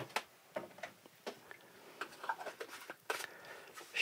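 Faint, irregular clicks and taps of a plastic batter shaker bottle and milk carton being handled, as the bottle's red screw cap is put on.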